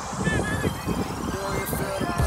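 Shouted voices carrying across an open football field, over a steady background rumble.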